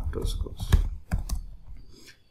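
Computer keyboard typing: a series of separate keystroke clicks, several a second, that thin out and fade in the second half.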